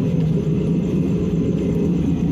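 Waste-oil burner stove running at full burn: a steady, loud, low rushing sound that carries about 20 metres and sounds like an aircraft.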